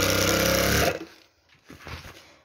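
Electric sewing machine running steadily as it stitches curtain heading tape onto sheer fabric, then stopping about a second in.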